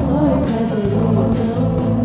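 Live band performance: several voices singing a melody together over strummed acoustic guitars, a bass line and a steady beat.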